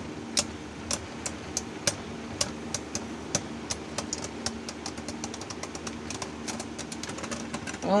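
Two Beyblade Burst spinning tops whirring in a plastic stadium with a steady hum, clacking against each other in rapid, irregular clicks, several a second.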